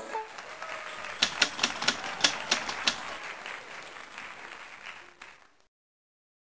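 Typewriter key-strike sound effect: seven sharp clacks in quick succession about a second in, over a soft hiss that fades out near the end.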